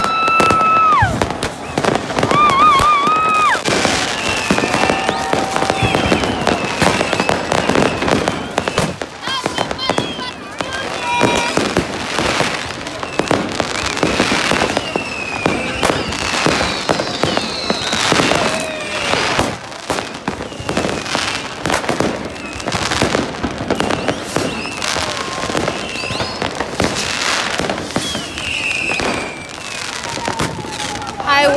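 Many fireworks and firecrackers going off at once, a dense, continuous run of bangs and crackles with a few high whistles sliding in pitch. Crowd voices mixed in.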